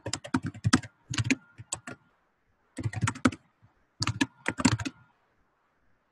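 Typing on a computer keyboard: several quick runs of keystrokes with short pauses between them, stopping about five seconds in.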